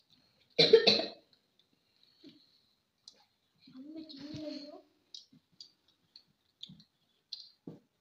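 A single loud cough about half a second in. Around the middle comes a short vocal sound, and faint small clicks and taps from eating at the table are scattered throughout.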